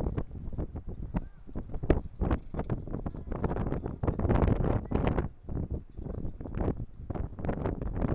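Wind buffeting an outdoor microphone: a low rumble with irregular knocks and crackles, thickest about halfway through.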